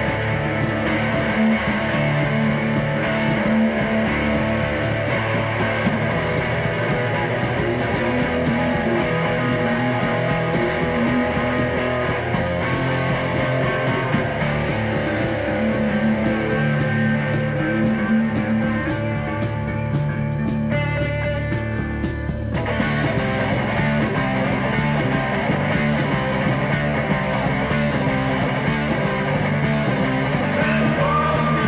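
Mid-80s punk band playing live, heard from a lo-fi cassette demo: an instrumental stretch of electric guitar with the full band, no singing. About two-thirds of the way through it briefly thins to a held, ringing chord, then the full band comes back in.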